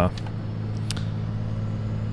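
Steady engine and road drone heard inside a moving car's cabin, with a faint click about a second in.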